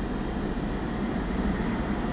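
Steady room noise: a low hum under an even hiss, with no distinct event.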